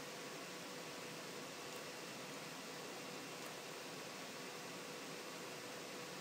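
Faint steady background hiss, the recording's noise floor, with a faint steady hum tone running through it.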